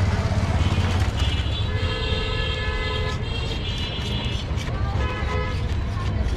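Street traffic with a steady low engine rumble and vehicle horns honking: two long honks back to back starting about two seconds in, and a shorter one near the end.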